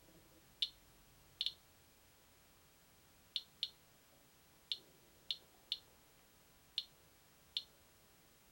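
Radiation Alert Inspector EXP Geiger counter clicking at random: about ten sharp clicks at irregular intervals, two of them in a close pair early on. Each click is one radiation count detected by the pancake probe lying on a granite tile, at a low count rate.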